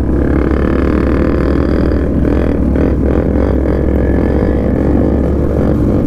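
Motorcycle engines running steadily in a group ride at low speed, heard from the rider's own Yamaha R15 V3, a single-cylinder bike, with the surrounding bikes mixed in as a continuous low drone.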